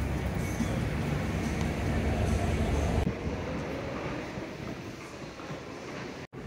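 Low, steady rumble of city street traffic with an elevated train running overhead. About halfway through the rumble drops away suddenly, leaving a quieter, even background hum.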